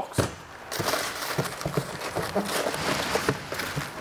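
Cardboard packaging rustling and scraping, with many small knocks and crinkles, as boxed engine parts are handled and lifted out of a shipping carton.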